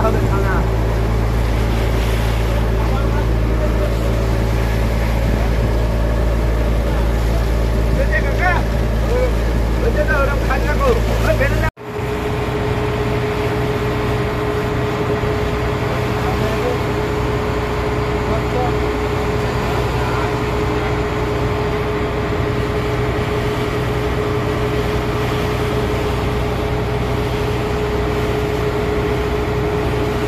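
Fishing boat's inboard engine running steadily under way, a loud low drone. It cuts out for an instant about twelve seconds in and returns as a steadier hum with a clear tone.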